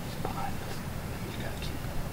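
Faint hushed whispering over a steady low wind rumble.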